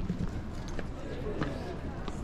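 Footsteps on stone paving at a walking pace, a step a little more than every half second, with faint voices of people around.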